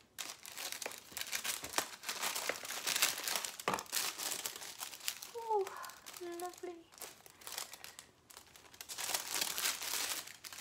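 Tissue paper crinkling and rustling as a silk pillowcase is drawn out of its box and unwrapped, the crinkling easing off briefly a little after the middle.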